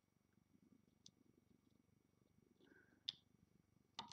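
Near silence with two faint clicks, a small one about a second in and a sharper one about three seconds in: a hook catching rubber bands against the pegs of a plastic Rainbow Loom.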